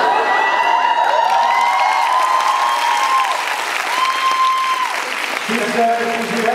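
Audience applauding, with high calls and whoops rising and falling over the clapping.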